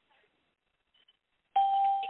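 Near silence, then about one and a half seconds in a single steady electronic beep over a phone conference line, lasting just under a second and fading out.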